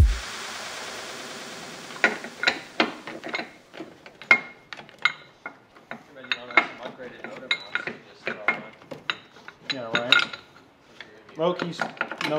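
Ratchet wrench clicking in short irregular runs, with light metallic clinks, as the bolts holding a motor mount to the engine are unscrewed. A fading hiss fills the first two seconds before the clicking starts.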